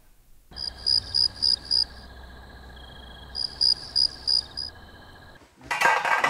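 Insects chirping: two runs of about five quick, high chirps, over a steady high trill and a low background hum. A short clatter comes near the end.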